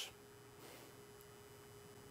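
Near silence: faint room tone with a faint steady tone.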